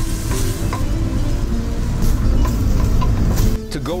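Chopped carrots, leeks, fennel and onion sizzling in a stainless steel pot while a wooden spoon stirs them, with a few small knocks of the spoon, over a low rumble. The sizzling cuts off sharply shortly before the end.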